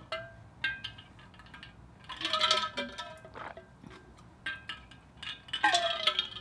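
Drinking from an insulated metal water bottle: a few swallows with small clicks and clinks from the bottle, the louder ones about two to three seconds in and again near the end.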